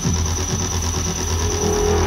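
Electronic music played through a pair of Klipsch Forte III horn loudspeakers driven by a Yaqin MC-100C tube amplifier. A steady deep bass runs under falling-pitch sweeps about twice a second that fade away, and a synth melody comes in near the end.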